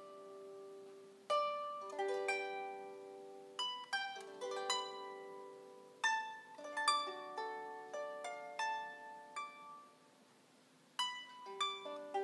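Solo harp playing a slow melody with chords, each plucked string ringing on and fading. The playing thins to a short lull about ten seconds in, then resumes with a new phrase.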